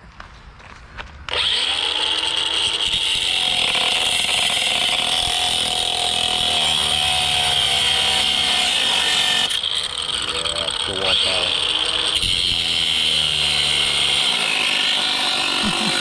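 Cordless DeWalt 20V MAX angle grinder with a cut-off wheel starting about a second in and cutting through exhaust flange bolts, a steady high whine with a brief dip near the middle.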